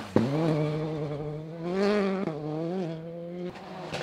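Rally car engine held at high revs through a corner, its note mostly steady with a brief dip and a couple of small rises, cutting off abruptly about three and a half seconds in.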